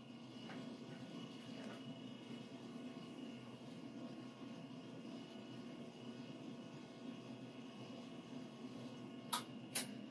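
Two sharp clicks close together near the end, over a faint steady hum: the two-way solenoid valve of a BestCode continuous inkjet printer switching partway through its printhead clean cycle. The click marks the start of the makeup-fluid flush through the printhead.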